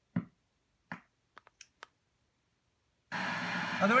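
Plastic button clicks on a P-SB7 ghost box (a modified sweeping radio), five or six presses in the first two seconds. About three seconds in the radio comes on and starts its reverse FM sweep: a steady hiss of static.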